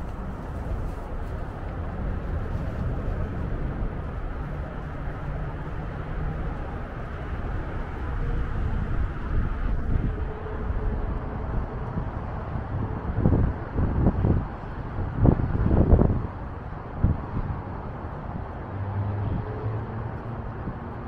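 Wind buffeting the microphone: a steady low rumble with several stronger gusts about two-thirds of the way through.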